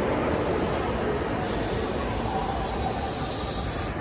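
Steady, even rumbling din of a busy indoor amusement park and arcade, with no distinct event standing out.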